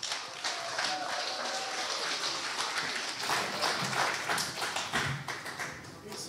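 Audience applauding, a steady patter of clapping that fades away near the end.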